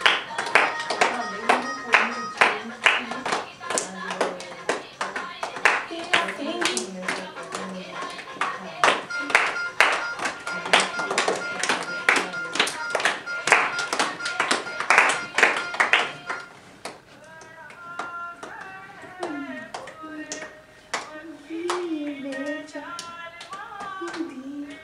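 A group of girls clapping their hands in a steady Giddha rhythm, about three claps a second, over music with singing. The clapping stops about two-thirds of the way through, leaving voices.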